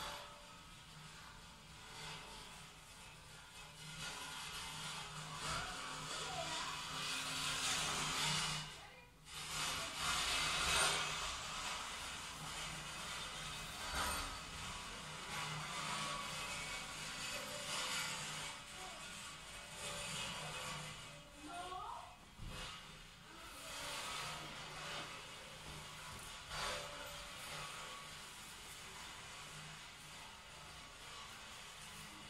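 Electric hair clipper running with a steady low hum, noisier in stretches as it cuts hair, with a brief break about nine seconds in.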